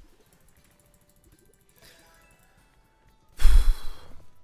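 Faint slot-game music with soft steady tones, then, near the end, a short loud sigh of breath blown across the microphone.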